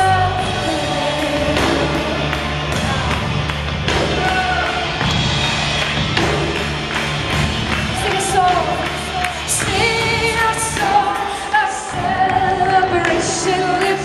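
Live worship music: a band and singers performing a praise song over a steady drum beat.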